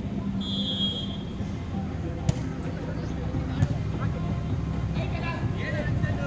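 A referee's whistle blown briefly, then two sharp slaps of a volleyball being hit, a little over a second apart, as play restarts with a serve and a return. Crowd chatter and a low steady hum run underneath.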